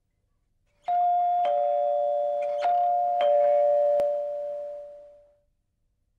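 Doorbell chime ringing four notes, starting about a second in, then ringing on and dying away near the end. A short click sounds during the fade.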